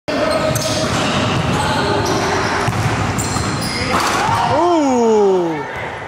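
Voices chattering in a large gym hall, with basketballs bouncing on the hardwood floor. About four and a half seconds in, one voice calls out a long shout that falls in pitch.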